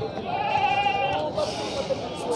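A goat bleating once: one long, steady call lasting most of a second, over the chatter of voices.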